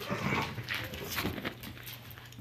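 Two small dogs play-fighting: dog vocal sounds mixed with scuffling, loudest in the first second and a half.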